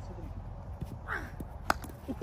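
A single sharp crack of a cricket bat hitting a tape-wrapped tennis ball near the end, over faint voices.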